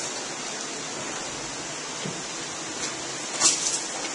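Steady rush of running water from the mill's water supply, with a brief sharp clack about three and a half seconds in.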